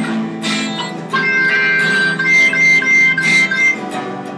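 Guitar strummed in an ongoing rhythm, with a high melody line of long held notes over it.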